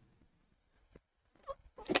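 Near silence with one faint tap about a second in and a brief short vocal sound, then a man starts speaking right at the end.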